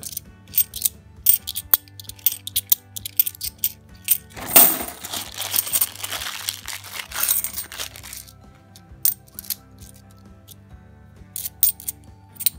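50p coins clicking and clinking against each other in the hand as they are sorted. From about four seconds in, for about four seconds, a plastic coin bag rustles and crinkles as it is handled, with coins chinking inside it, before the separate coin clicks resume.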